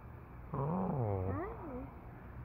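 A person's voice: one drawn-out, sing-song call, rising and then falling in pitch, about a second and a half long.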